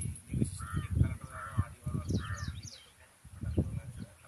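Bird honking three times in quick succession, goose-like calls, over low rumbling.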